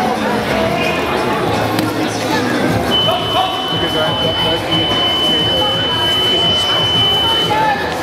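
A steady high electronic buzzer tone that starts about three seconds in and holds for about four and a half seconds, over continuous crowd chatter.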